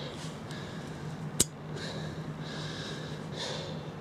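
A man's audible breaths over a steady low hum, with one sharp click about a second and a half in.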